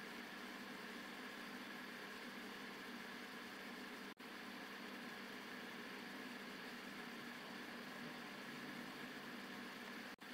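Faint steady hiss of room tone or recording noise, with no distinct event. It drops out for an instant about four seconds in.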